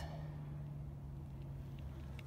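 A steady low hum with one low tone over a faint rumble.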